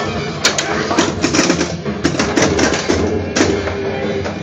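Spider-Man pinball machine in play: its game music over a run of sharp clicks and knocks from the playfield.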